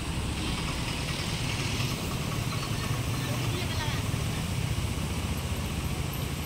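Steady low rumble of outdoor background noise, with faint voices in the distance.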